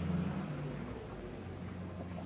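Quiet room tone with a low, steady hum.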